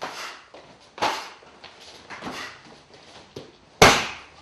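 Punches and kicks landing on a hand-held striking pad: a series of sharp slaps about a second apart, the loudest near the end, each with a short echo.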